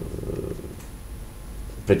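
A man's voice holding a low, drawn-out hesitation sound in the middle of a sentence, fading to a quiet pause. Speech starts again near the end.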